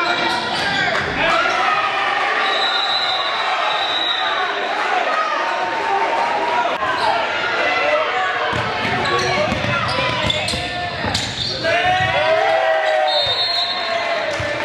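Live sound of a basketball game in a school gym: the ball bouncing on the hardwood court, with indistinct voices of players and spectators calling out in the hall.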